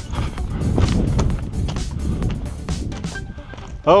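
Footsteps crunching on loose, flaky scree rock, over background music and a steady low rumble.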